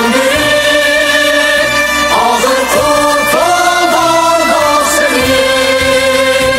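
A song with a singing voice over musical accompaniment, the melody held in long notes that slide from one pitch to the next.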